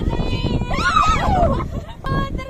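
High-pitched voices shrieking and laughing, with one long falling squeal about a second in, over wind rumbling on the microphone.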